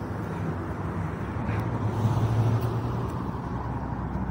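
Motor vehicle engine and road noise, a steady low rumble that swells briefly about two seconds in.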